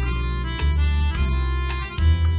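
Chromatic button accordion playing a boléro melody: held, reedy chord notes that change about every half second, over a steady bass line.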